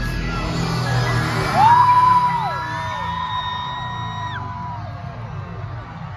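Concert crowd screaming and whooping, several high voices holding long screams from about one and a half seconds in, over loud music with a deep bass that drops away near the end.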